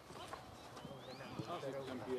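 Faint, distant shouting of players on a football pitch, with a few soft knocks early on.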